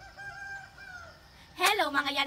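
A rooster crowing faintly, one drawn-out call over the first second or so. A girl's voice starts speaking loudly near the end.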